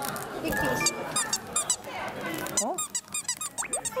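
A toddler's squeaky shoe chirping over and over as its squeaker is pressed, in quick runs of short high squeaks, with background music under it.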